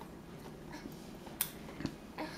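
A baby being spoon-fed in a high chair: mostly quiet, with a sharp click about one and a half seconds in and a softer knock just after.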